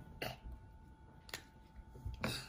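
Quiet room with a short soft noise near the start, then a single sharp click about halfway through: the cap of a dry-erase marker pulled off.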